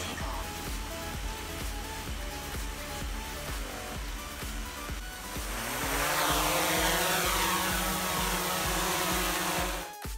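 Background music with a steady beat. About halfway through, a motor whine rises in pitch and then holds: a DJI Mavic Pro quadcopter's propellers spinning up for take-off.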